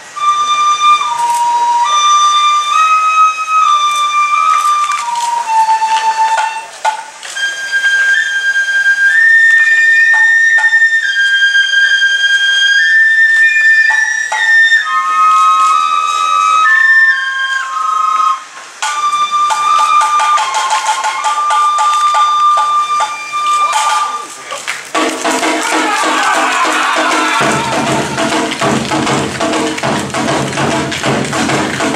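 Awa odori festival music: a shinobue bamboo flute plays a stepping melody over a steady run of percussion strikes. About 25 seconds in the flute stops and a denser, fuller music mix takes over.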